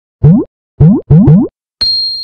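Intro logo sound effect: four short springy boings, each rising in pitch, the last two back to back. Near the end a bright, high chime strikes and rings on.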